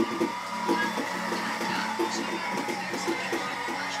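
Television broadcast audio playing in a small room: a voice talking over steady background music.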